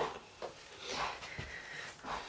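Faint rustling of a comb being drawn through a small child's hair, a couple of soft strokes.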